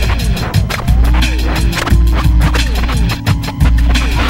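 Loud electronic music with a steady beat, heavy bass and sliding pitch sweeps like turntable scratching.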